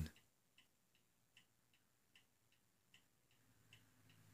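Faint, steady ticking of a mechanical clock, about two to three ticks a second, alternately louder and softer, in an otherwise quiet room.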